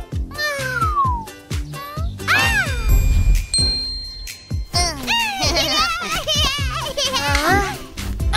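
Cartoon characters making wordless vocal sounds that glide up and down in pitch, over background music, with a short high twinkling effect about three seconds in.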